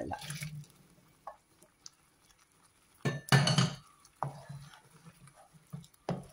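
Cooked chickpeas being tipped from a steel bowl into thick masala gravy in a frying pan: wet dripping and plopping with light clinks of metal. A loud clatter of the vessel against the pan comes about three seconds in.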